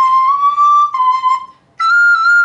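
Soprano recorder playing a C that glides up toward D as the back thumb hole is slid open, then drops back and stops: a sliding-thumb ornament giving a wavy bend to the note. A higher note starts near the end.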